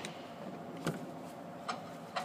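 Two light clicks, about a second in and again near the end, as disconnected coolant hoses and their fittings are handled and moved aside in an engine bay, over a faint steady background hiss.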